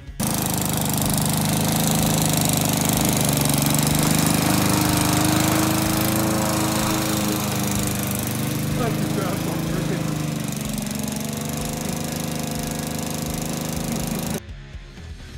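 A walk-behind lawn mower's engine running steadily under mowing load. It comes in abruptly just after the start.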